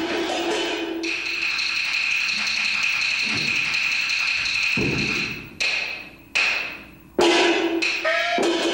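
Peking opera percussion band of hand gongs, cymbals and drum. A ringing metallic tone is held from about a second in, then a run of sharp strikes comes in the second half, each dying away, with the last strike the loudest.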